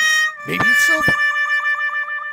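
A long, steady electronic tone with overtones, held for over a second and wavering slightly in the middle, joined by a short vocal murmur about half a second in.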